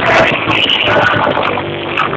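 Live pop music played loud over a concert sound system, recorded on a phone with a cut-off top end. A steady low note comes in near the end.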